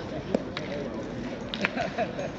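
A few sharp clicks of steel boules knocking, the loudest about a third of a second in and a quick run of three near the end, over a murmur of voices.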